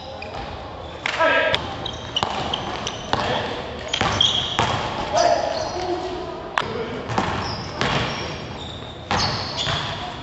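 Basketball being played in a large echoing gym: the ball thuds on the floor and hits the rim and backboard at irregular moments, with players' voices calling out.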